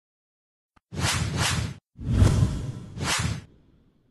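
Whoosh sound effects for an animated title intro: a quick series of swelling swooshes starting about a second in, the last one fading out near the end.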